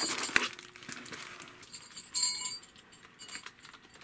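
Packaging being handled: cardboard and a plastic bag rustling and clicking as a bagged figure is lifted out of a box. Small metal jingle bells on a jester costume jingle, loudest about two seconds in.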